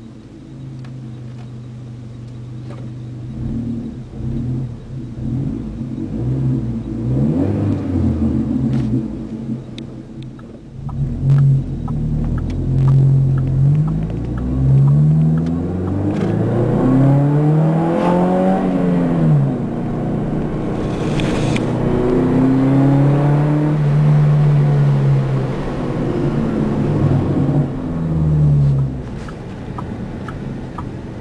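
2005 GMC Canyon's 2.8-litre inline-four through a Flowmaster 40 series muffler on the stock piping, heard from inside the cab. It runs low and steady at first, then its pitch climbs and falls again and again as the engine is revved and pulls, with a held steady stretch past the middle.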